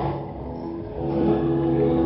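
Music from a shortwave AM broadcast on 9385 kHz, received on a software-defined radio. It starts at the opening and grows louder about a second in, narrow and muffled with no treble, as AM reception sounds.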